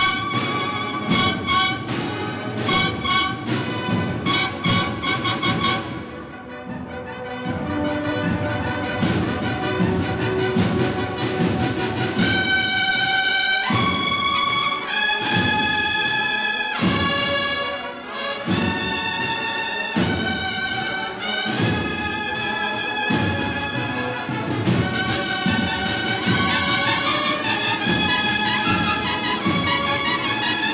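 A Spanish cornet-and-drum band (banda de cornetas y tambores) playing a Holy Week processional march: cornets with lower brass over drums. It opens with rapid repeated cornet notes, eases off briefly, then moves into long held chords.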